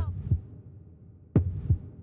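Heartbeat sound effect: two double 'lub-dub' thumps about a second and a third apart, each beat deep with a sharp click at its onset, over a faint low hum.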